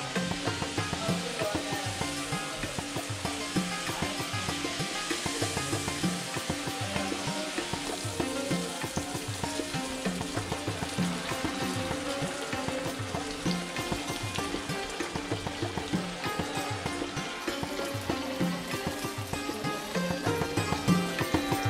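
Background music with a steady, repeating beat over the sizzle of sel roti rings deep-frying in hot oil in a wok.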